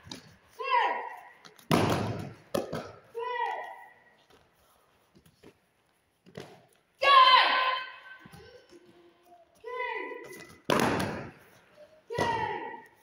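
Judo throws landing on foam mats: two loud thuds as a body hits the mat and slaps down in a breakfall, about two seconds in and again near the end. Between them come about four short, high-pitched shouts from the boys.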